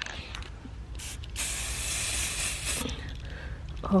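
Aerosol spray paint can spraying gold paint onto a plastic hula hoop: a short spurt about a second in, then a steady hiss lasting about a second and a half. A few clicks come just before.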